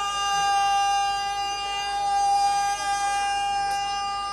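A steady, high-pitched tone held at one unchanging pitch, with a few faint voice traces beneath it.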